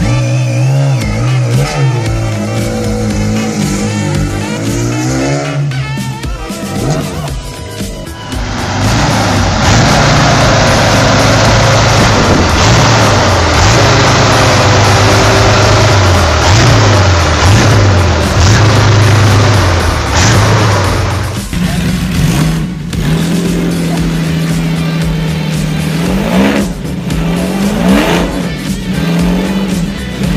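Custom motorcycle engines heard one after another. First a multi-cylinder engine revs up and down. Then comes a much louder, rough, continuous engine sound from a giant motorcycle built around a huge military-style engine. In the last third an engine idles steadily, with a couple of quick revs near the end.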